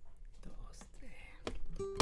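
A quiet pause with faint soft breath and movement sounds, then a single plucked acoustic guitar note ringing out near the end, just before the strumming starts.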